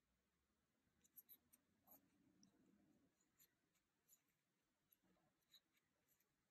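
Near silence, with faint scattered small clicks and rustles of a metal crochet hook working cotton thread, from about a second in until near the end.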